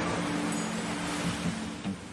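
Ocean surf washing in, fading toward the end, over background music holding a few low sustained notes.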